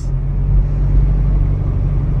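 Steady low rumble of a car's engine and tyres on the road, heard from inside the cabin while driving at an even speed.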